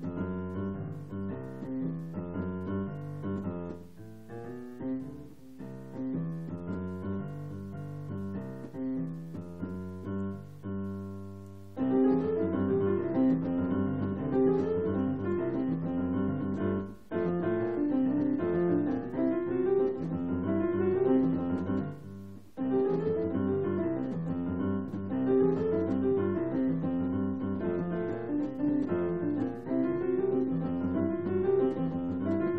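A keyboard played with a piano sound, a melody over a bass line. About twelve seconds in the playing suddenly gets much louder and fuller, and it breaks off briefly twice later on.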